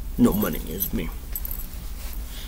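A man's voice chanting "pay me" in short syllables, then a quieter stretch with faint, light metallic jingling.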